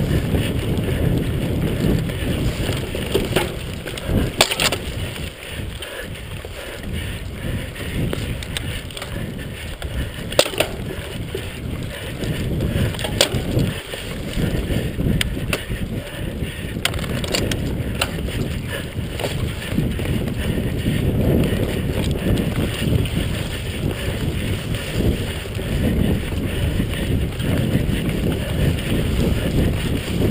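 A mountain bike rattling over a rough, bumpy trail, with wind buffeting the rider's camera microphone as a steady low rumble, and a handful of sharp knocks from the bike hitting bumps.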